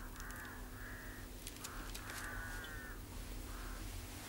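A bird calling, a run of about five short harsh calls with the longest a little past the middle, along with a few faint clicks.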